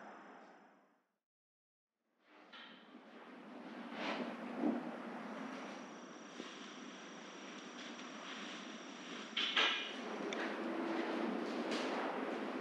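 Quiet background noise with a few light knocks and a faint thin high whine through the middle, after a brief spell of dead silence near the start.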